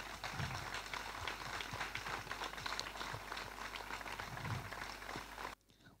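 An audience applauding steadily, a dense patter of many hands clapping; the sound cuts off abruptly near the end.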